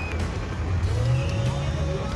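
Off-road rock crawler's engine revving under load as it works over a rocky obstacle, its pitch rising briefly about a second in.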